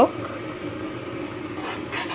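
A steady low mechanical hum, even in level throughout, with a faint brief sound near the end.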